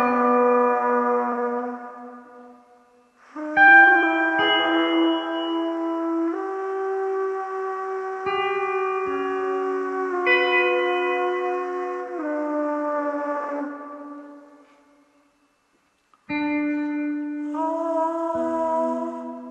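Plastic tube trumpets holding long notes, several pitches sounding together. The notes shift in steps and die away twice, the second time leaving a short silence before new notes enter near the end.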